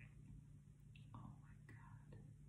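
Near silence: a faint steady room hum, with a softly whispered "oh my" about a second in.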